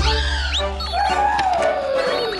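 Cartoon soundtrack music with sound effects: a steady low rumble under the music, then a long pitched glide falling from about a second in.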